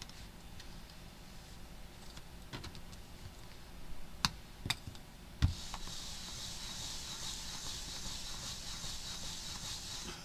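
Handling of a hinged stamping tool on a desk: a few sharp clicks, then a low thump about five and a half seconds in as the lid comes down on the card, followed by a steady soft hiss while it is pressed.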